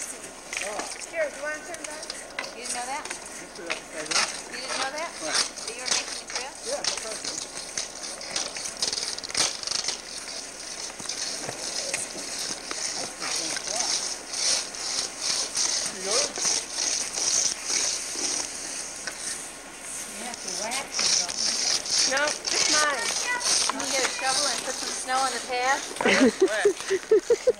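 Indistinct voices talking some way off, over a run of crisp crunching and scraping of snow under skis and boots.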